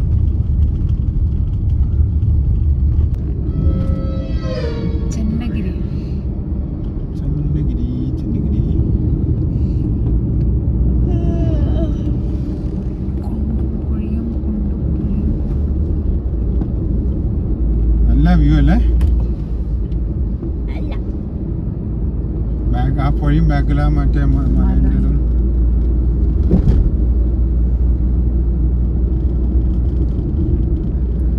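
Steady low rumble of a car's road and engine noise heard from inside the cabin while driving on the highway, with a few brief snatches of voices.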